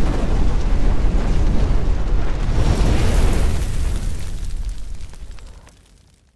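Logo-reveal sound effect of fire and explosion: a loud, deep noise with a hiss that swells in the middle, fading away to silence near the end.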